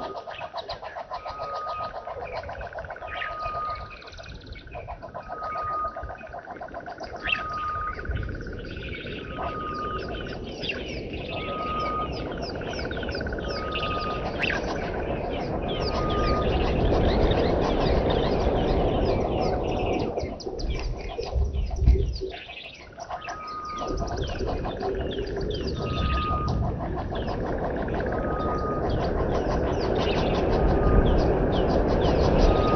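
Wild birds calling: one bird repeats a short, even piping note about once a second while others chirp busily, over a low rumble that builds from about eight seconds in.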